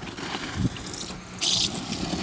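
Winter boots stepping through wet, slushy snow and mud, a wet scuffing noise, with a louder burst about a second and a half in.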